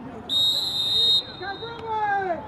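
Lacrosse referee's whistle: one high-pitched blast lasting just under a second, followed by men's voices calling out on the field.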